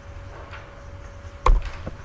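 Clicks and taps from a computer keyboard and mouse picked up by a desk microphone, with one louder knock about one and a half seconds in, over a faint steady hum.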